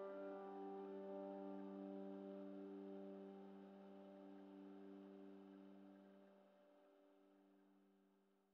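A closing keyboard chord, piano-like, rings out and slowly dies away. It fades to silence about six and a half seconds in.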